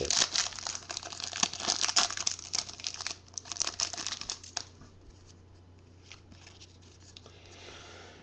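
Clear plastic wrapper of a football trading-card pack crinkling and tearing as it is peeled open by hand; the crackling stops about four and a half seconds in.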